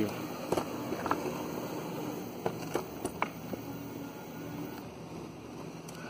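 Go-kart driven by two hoverboard brushless hub motors rolling over concrete: a steady hum and tyre noise, with a few sharp clicks and rattles from the frame.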